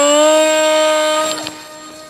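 Small RC glider's brushless electric motor and two-blade propeller spooling up to full throttle for a hand launch: a quick rising whine that settles into a steady buzzing tone, then fades over the second half as the plane flies away.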